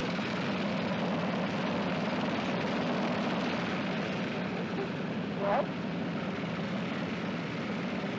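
A steady engine-like drone with a constant low hum running throughout, and one short rising sound about five and a half seconds in.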